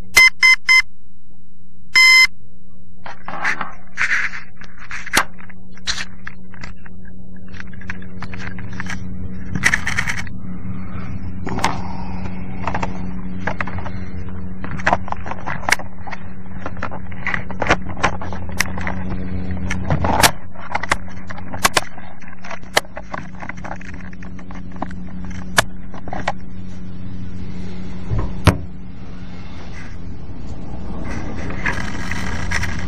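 Electric RC helicopter running with a steady motor-and-rotor hum, while the camera mounts rattle and click over it. A few short electronic beeps come right at the start and one longer beep comes about two seconds in. Near the end there is a sharp knock.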